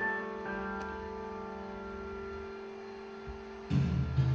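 A band of industrial robot arms playing music on a piano and other instruments: a chord rings on for about three and a half seconds, slowly fading, and new notes come in near the end.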